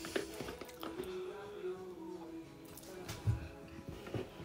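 Quiet background music with steady held notes. A few soft clicks and a dull thump at about three seconds come from a cream carton being handled and opened.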